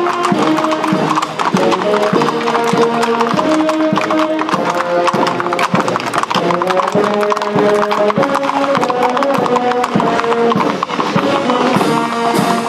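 Brass marching band playing a tune with flutes, trumpets and drums. In the first part, horses' hooves clop on the paved street as mounted cavalry pass.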